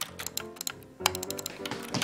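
Computer keyboard typing: a quick run of key clicks in the first half, then a few more, over background music.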